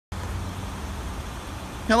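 Steady low background rumble with a faint hum, then a man's voice begins right at the end.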